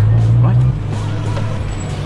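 Car engine running at low revs, heard from inside the cabin as a steady low hum that drops slightly in level about a third of the way in.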